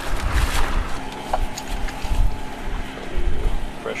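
Plastic bag and bubble-wrap packaging rustling and crinkling as parts are unwrapped, with wind buffeting the microphone in uneven low gusts.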